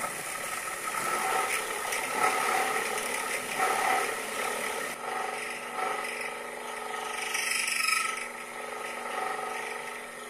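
Sherline mini milling machine running, its end mill cutting a slot into a thin aluminum cooling fin held in a PLA fixture and fed by hand. A steady motor whine sits under a scratchy cutting sound that swells and eases, changing character about halfway through.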